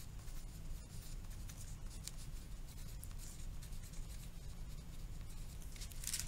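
A wooden pencil writing on a paper workbook page: a continuous run of short, irregular scratching strokes as words are written out.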